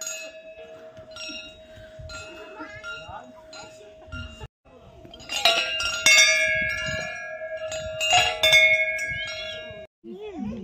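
Hanging metal temple bells being rung. A ringing tone carries through, and in the second half there are four loud clangs, each leaving a long ring.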